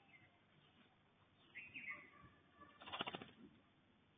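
Faint bird calls: a few short whistled notes gliding downward about a second and a half in, then a short rapid rattling burst, the loudest sound, around three seconds in.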